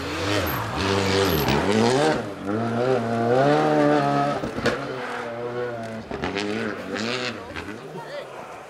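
Škoda Fabia rally car's engine revved hard through the gears, its pitch climbing and dropping with each shift, with a sharp pop about four and a half seconds in. It fades near the end as the car drives away.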